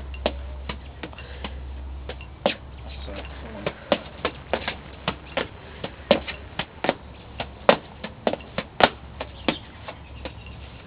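A hacky sack being kicked over and over: a run of short soft thuds and taps, irregularly spaced about one to two a second, over a steady low hum.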